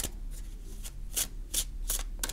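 A deck of tarot cards being shuffled by hand, the cards sliding and rasping against each other in a few short, unevenly spaced strokes.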